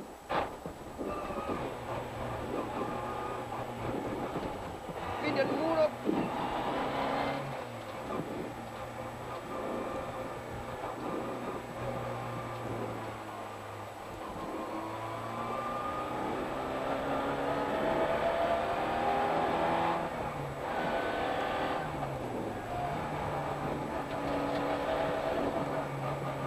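Rally car engine heard from inside the cockpit at speed, the revs rising and falling as the driver accelerates and lifts for corners, with a long climb in revs about two-thirds of the way through and a quick drop and pick-up near the end.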